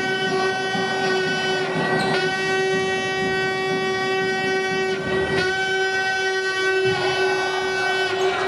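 A loud, steady horn tone held at one pitch, breaking off briefly about two seconds in and again about five seconds in, over the general noise of the game.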